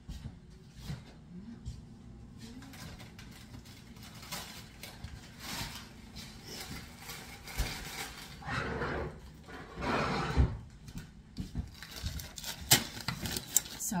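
Handling noises: a plastic bag of peas rustling in spells, then a few sharp clicks near the end, over a low steady hum.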